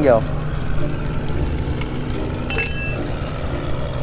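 A ring spanner clinking on a motorcycle's oil drain bolt: a short, bright metallic ring about two and a half seconds in. A steady low engine drone runs underneath.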